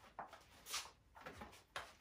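Faint rustling of fabric in several short brushes as a shirt is tucked into the waistband of high-waisted pants.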